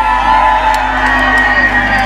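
Loud live concert music with held notes over a steady bass, and the crowd whooping over it.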